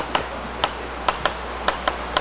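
A run of light, sharp taps, about eight in two seconds at an uneven pace, over a steady low hum.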